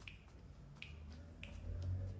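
Quiet finger snaps in a slow, even rhythm, about one every two-thirds of a second, over a low hum.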